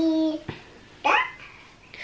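A small child's wordless vocal sounds: a short held call, then about a second in a brief squeal that rises sharply in pitch.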